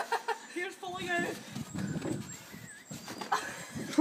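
Two people laughing and squealing, their voices sliding up and down in pitch, with a few short sharp snaps near the start and again about three seconds in.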